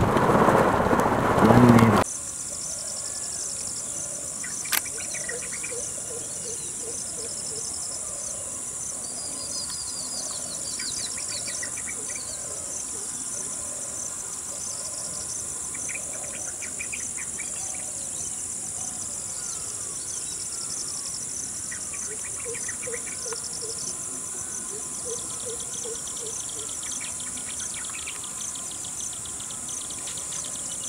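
Heavy rain for about the first two seconds. It cuts off suddenly to a steady high insect drone with scattered bird calls and chirps over it, and a single sharp click about five seconds in.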